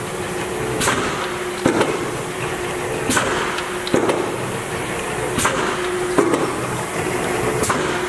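110-ton Niagara OBI mechanical press cycling continuously, with a sharp clunk about every three-quarters of a second over the steady hum of its running motor and flywheel.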